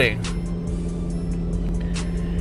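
2007 Toyota Tacoma engine idling steadily, heard from inside the cab as a low, even hum, running through its newly fitted middle pipe and muffler with everything working.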